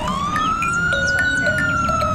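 Police jeep siren sound effect: one slow wail that rises, peaks about halfway and falls back, over a low rumble.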